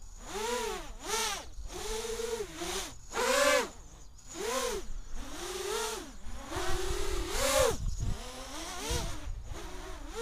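A 3D-flying quadcopter's electric motors and propellers whining, their pitch swinging up and down in repeated surges about once a second as the throttle is pumped. A low rumble joins twice in the second half.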